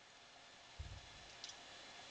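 Near silence: faint steady hiss of the recording, with a brief faint low thump just under a second in and a faint tick about a second and a half in.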